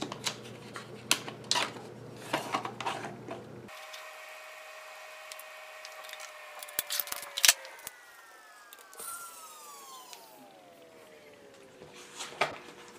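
Clicks and taps of a slim metal screwdriver-bit case being handled and slid open, bits shifting in their slots, with one sharper click about seven seconds in.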